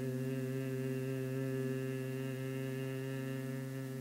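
Bhramari pranayama humming breath: one long, steady human hum, the humming sound of a bee, held on a single pitch through a slow exhalation and easing slightly near the end.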